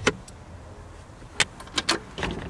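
Plastic dashboard storage lids of a 2009 Dodge Journey being handled: a click just as it begins, then a sharp snap about one and a half seconds in and two quick clicks near the end, as a lid latch catches.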